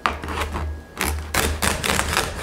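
Knife cutting through the crisp crackling skin of a whole roast pig (lechon). After one sharp crack at the start and a short lull, a rapid run of crunchy crackles begins about halfway through as the blade saws into the skin.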